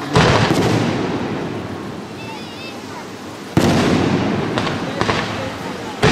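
Fireworks display: aerial shells going off with sharp bangs, one right at the start and another about three and a half seconds in, then two smaller reports. Each bang is followed by an echoing tail that fades away.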